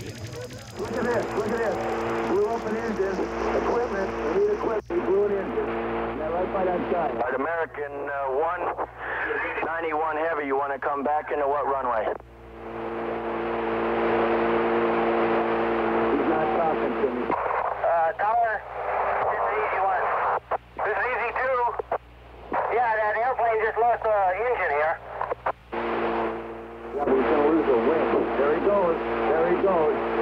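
Unintelligible, radio-like voices in a sound collage, cut off in the treble, over a steady chord of low tones that sounds for several seconds, breaks off and returns twice.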